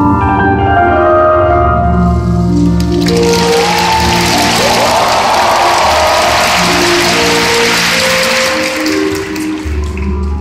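Figure-skating program music with bell-like mallet tones, played over arena loudspeakers and heard from the stands. About three seconds in, the crowd breaks into applause that fades out just before the end.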